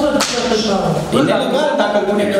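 People talking in a meeting room, with a single sharp crack, like a slap or smack, about a fifth of a second in.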